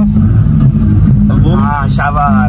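Car running on the road, heard from inside the cabin: a steady low engine and road hum, with voices talking over it from about halfway in.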